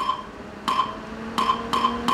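Count-in clicks from the playback track before the music starts: sharp ringing clicks, first slow and then twice as fast about one and a half seconds in, with a faint steady hum underneath.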